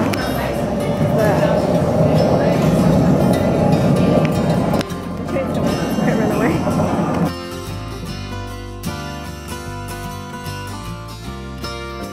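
A London Underground train running through the station: a loud rumble with a wavering whine. It cuts off about seven seconds in, leaving background music with a steady beat.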